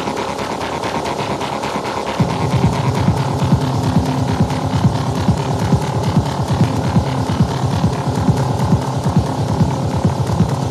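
Raw sequenced electronic pattern from a Behringer TD-3 bass synth and a Cre8audio West Pest synth, with a fast steady pulse. About two seconds in a loud, low, rumbling kick and bass part comes in and keeps pulsing.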